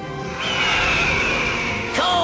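Cartoon background music with a long hissing sound effect laid over it. The effect starts about half a second in and carries a thin whistle that slowly falls in pitch before it cuts off near the end.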